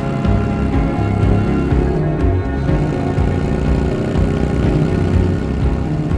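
Instrumental music with a steady, pulsing low beat.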